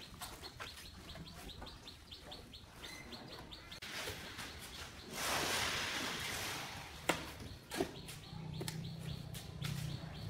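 Shovels working a dry sand-and-cement mix, with a long scrape about five seconds in and two sharp clinks of a steel blade soon after. Small birds chirp repeatedly throughout.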